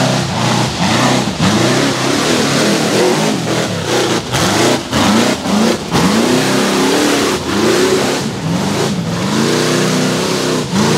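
Rock racing buggy's engine revving hard in repeated bursts under load on a steep rock climb, its pitch sweeping up and falling back about once a second, with brief drops between throttle stabs.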